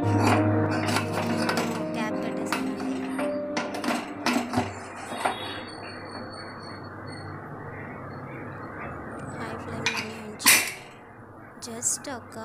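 Pressure cooker being closed up on a gas stove: scattered metal clinks and knocks of the lid and fittings, then one louder clank about ten seconds in as the pressure weight goes onto the vent.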